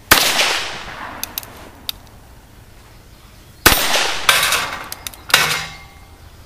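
Ruger Single Six revolver firing .22 rimfire magnum. It starts with one sharp shot whose report rings out and fades over about a second, followed by a few faint clicks. About three and a half seconds in comes another shot, then two more sharp reports within the next two seconds.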